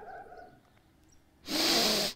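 A woman crying between sentences: a faint, short whimper-like tone, a pause, then a sharp, noisy intake of breath lasting about half a second near the end.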